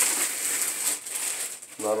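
Clear plastic wrap rustling and crinkling as it is pulled off an amplifier, a steady rustle that thins out after about a second.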